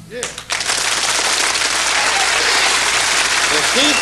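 Audience applauding: the clapping comes in within the first half second and then holds steady and loud.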